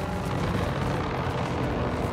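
Low, rapidly pulsing thrum of helicopter-like rotor aircraft, steady in level.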